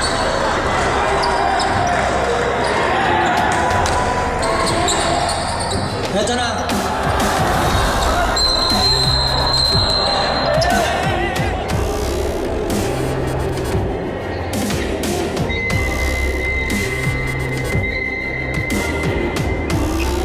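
Indoor basketball game: a ball bouncing on the hardwood court amid crowd chatter in a large, echoing gym, with music playing throughout. A steady high tone sounds for about two seconds in the middle, and another for several seconds near the end.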